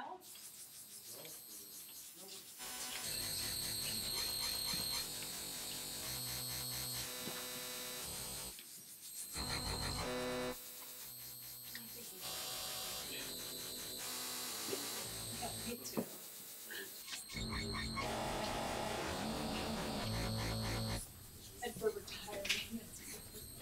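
Electronic synthesizer score of eerie sound design: a fast-pulsing drone with steady high tones and a low bass note that comes and goes, switching abruptly from one block to the next several times.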